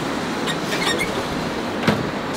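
Steady in-flight cabin noise of an Airbus A380 cruising, an even rushing drone, with a single sharp click near the end.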